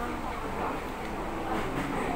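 Restaurant background: a steady low rumble with indistinct voices talking.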